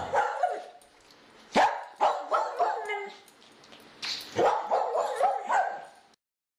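A dog barking and yipping: a couple of sharp barks about one and a half to two seconds in, a short whine after them, then a quick run of barks near the end that cuts off abruptly.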